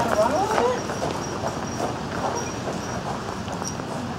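Footsteps of a person and a dog crunching across gravel, with a brief voice in the first second.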